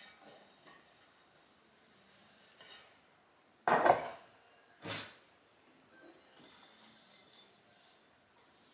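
Kitchenware being hand-dried with a cloth: soft rubbing, then a stainless steel saucepan set down on the worktop with a loud clank a little under four seconds in and a lighter knock about a second later.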